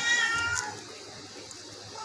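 A sick Persian cat meowing: one call of about half a second that drops in pitch at its end, with another call just starting at the very end.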